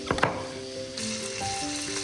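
A chef's knife cuts through an onion and knocks sharply on a wooden cutting board just after the start. From about a second in, chicken legs sizzle as they fry in oil in a pan. Background music plays throughout.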